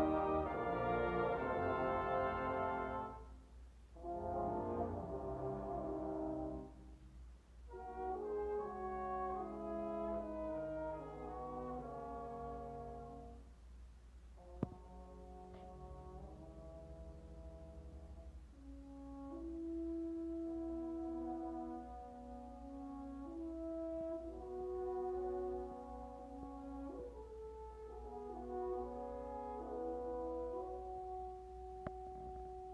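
A brass ensemble of trumpets, French horns, trombones, euphoniums and tubas playing sustained chords, loud and full for the first few seconds, with phrases broken by short pauses, then softer held notes from about halfway. A single sharp click comes about halfway through.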